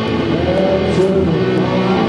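Amateur rock band playing live: guitar and drums, with held guitar notes that bend up and down in pitch.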